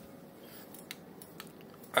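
Push-broom bristles brushing over a cat's fur and the wooden floor: a faint scratchy rustle with a few small clicks.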